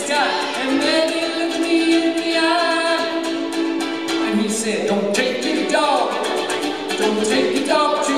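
Live folk song: voices singing long held notes over a strummed ukulele.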